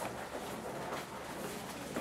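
Room tone: a low, steady background hiss with no distinct sounds.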